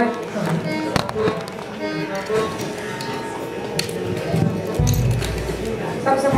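People talking over music, with a sharp knock about a second in and a low rumble near the end.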